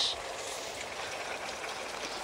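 Steady trickle of running water.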